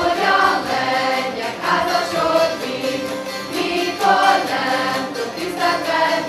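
A group of voices singing a Hungarian folk song in phrases of about two seconds, with short breaks between them, accompanied by citeras (Hungarian zithers) strummed together.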